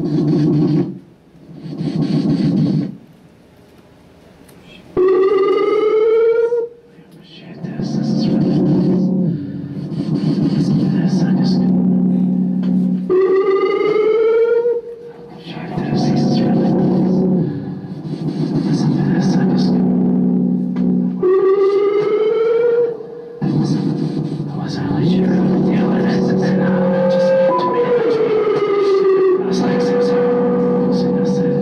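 Live experimental electronic improvisation: voice sounds into a handheld microphone run through an analog effects and synth box with delay. A pitched rising glide recurs about every eight seconds over a sustained low drone.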